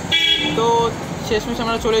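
A man talking in short phrases, with a few drawn-out syllables near the start.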